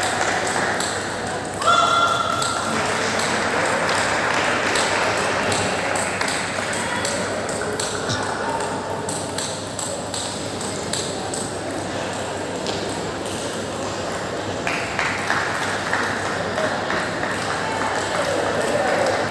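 Table tennis balls clicking off bats and tables in repeated rallies from several tables, over a steady murmur of voices. A short steady high tone sounds about two seconds in.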